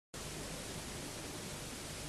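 Steady, even hiss of background noise from an old videotaped broadcast.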